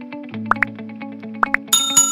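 Outro music with a quick, even run of short notes. Two pairs of sharp click sound effects about a second apart, then a bright chime near the end that rings on.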